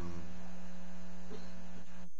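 Steady electrical mains hum on the microphone line, a constant low drone with several overtones stacked above it.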